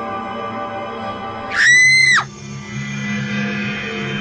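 Background music with sustained tones, broken about a second and a half in by one loud, high-pitched scream that holds for under a second and falls away at the end.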